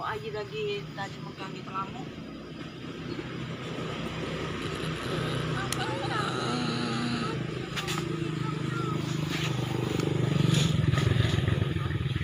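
A motor engine running steadily, growing louder near the end, with faint voices in the background.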